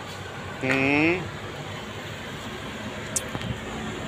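Steady street-traffic noise from a city road, an even rush with no distinct engine, broken by one short sharp click about three seconds in.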